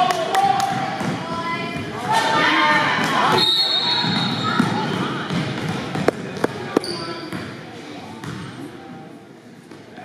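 A basketball bouncing on a hardwood gym floor amid voices in a large echoing gym, with three sharp bounces about six to seven seconds in and a brief high squeak near the middle; the sound quietens toward the end.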